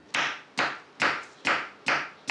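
A knife chopping vegetables on a cutting board in a steady rhythm, about two strokes a second.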